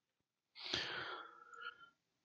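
A man's faint breath or sigh, picked up close by a headset microphone, lasting about half a second from just after the start.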